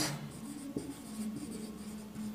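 Marker pen writing on a whiteboard: a faint run of short, scratchy strokes.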